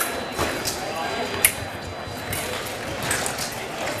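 Fencing bout in a large gym hall: a few sharp clicks of blade or foot contact, the loudest about a second and a half in, over a murmur of spectators' voices.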